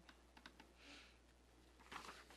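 Near silence with a few faint clicks of laptop keys being typed, and a brief soft hiss about halfway through.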